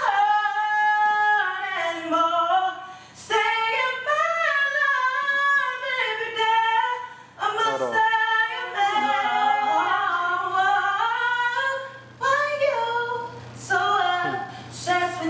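A woman singing solo and unaccompanied, holding long notes and sliding through melismatic runs, with short pauses for breath between phrases.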